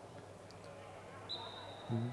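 Faint sports-hall background noise during a handball match, with a soft knock about half a second in and a thin, steady high tone coming in about two-thirds of the way through. A man's voice starts just at the end.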